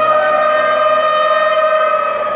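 Concert intro: one long, loud siren-like tone that slides slowly down in pitch.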